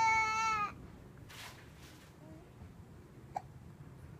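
A baby's drawn-out, high-pitched squeal, falling slightly in pitch and ending under a second in. A single faint click follows about three and a half seconds in.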